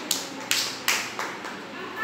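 A small child clapping her hands, four claps about three a second, stopping a little past halfway.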